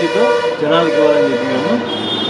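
A man talking over a steady pitched drone with overtones, which cuts off near the end.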